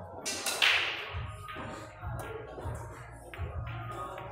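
A single sharp crack of a pool shot about half a second in, the clack of cue and billiard balls striking, over background music with a steady beat.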